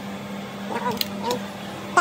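A man's voice, brief and indistinct, with two sharp clicks a moment apart about a second in.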